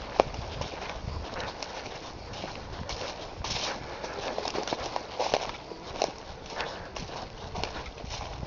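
Footsteps crunching and rustling through dry fallen leaves on a forest floor, step after step at a walking pace.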